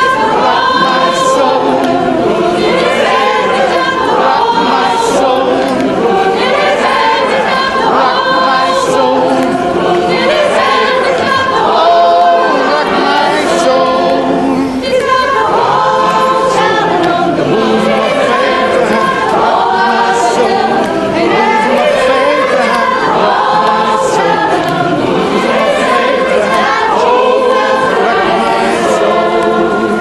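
A gospel choir singing a cappella, many voices in harmony throughout.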